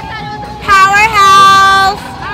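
A high voice cries out, sliding up into one loud, long held note that lasts about a second and stops just before the end.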